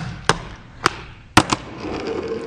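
A ReVive Tech Deck fingerboard clacking on a desktop during a trick: four sharp clacks, the last two close together about a second and a half in.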